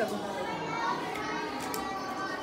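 Background chatter: several voices talking at once in a room, none of them clear, after one short spoken word at the start.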